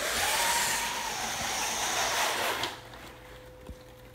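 Allen & Roth cordless dual-layer shade moving its sheer layer after the push button is pressed: a steady hiss and whir of the mechanism and fabric traveling, lasting about two and a half seconds, then fading away.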